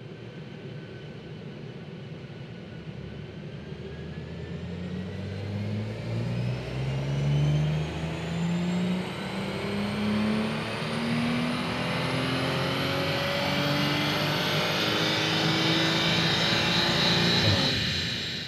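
Audi RS4 B9's 2.9-litre twin-turbo V6, in stock tune with its gasoline particulate filter, on a full-throttle chassis-dyno power run: the revs climb steadily for about fifteen seconds, then fall away and the sound fades near the end.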